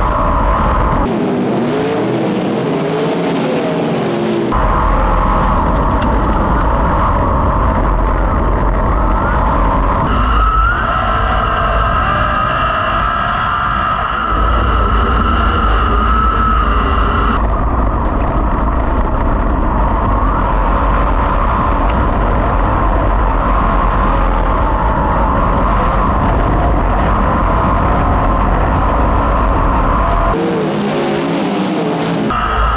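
Onboard sound of a 410 sprint car's V8 engine running hard at race pace around a dirt oval, loud and continuous.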